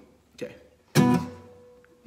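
Acoustic guitar strummed once about a second in, the chord ringing on and fading away.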